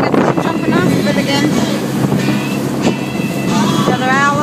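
Motorboat engine running steadily under way, with water rushing past the hull and wind buffeting the microphone. High shouting or whooping voices rise over it about a second in and again near the end.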